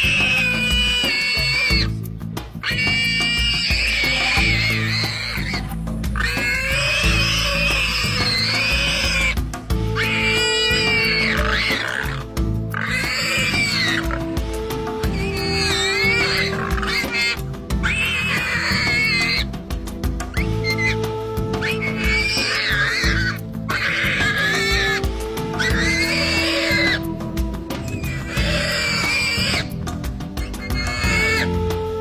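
Warthog squealing in distress while a leopard holds it down: high-pitched screams a second or two long, repeated about a dozen times with short breaks. Background music with low held notes and a steady low beat plays underneath.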